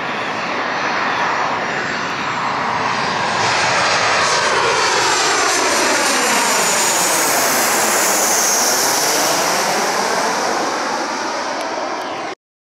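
Boeing 737 jet airliner on final approach passing low overhead, its engine noise building over the first few seconds and staying loud, with a high falling whine near the middle.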